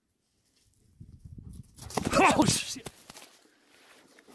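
A Malinois's paws on grass as it runs in toward the handler, starting about a second in, with a loud vocal call about halfway through.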